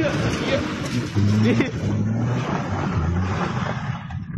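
Front-wheel-drive car engine revving up and down in steps as the car slides sideways across loose gravel and dirt, with a steady hiss of tyres and spraying stones.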